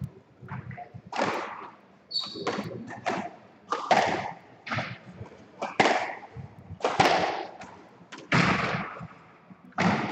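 A squash rally: the ball is struck by rackets and smacks off the court walls, a sharp, echoing hit roughly every second. A brief high squeak comes about two seconds in.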